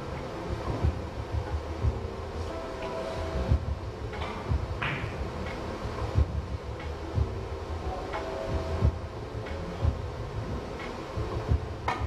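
Steady low hum of a billiards hall with a few sharp clicks, among them a cue tip striking the cue ball and carom balls knocking together during a three-cushion shot.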